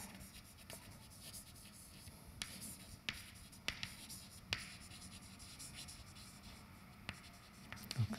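Chalk writing on a blackboard: faint scratching of the chalk along the board, with several sharp taps as strokes begin.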